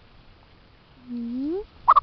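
A pet chicken calling: one rising call about a second in, then a short, sharp higher squawk near the end.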